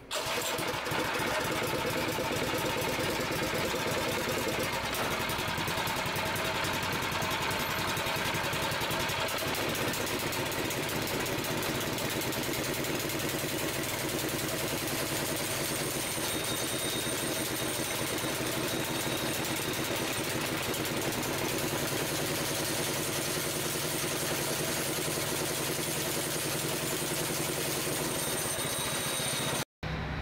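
6.5 HP single-cylinder four-stroke garden engine pull-started on its recoil cord, catching at once. It then runs steadily at an even idle.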